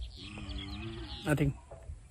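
A faint, drawn-out animal call lasting about a second, followed by a brief word from a man's voice, over a low rumble on the microphone.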